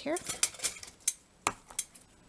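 A few sharp clicks and light clatters of a pair of scissors being picked up from among small craft tools on a table, the loudest about one and a half seconds in.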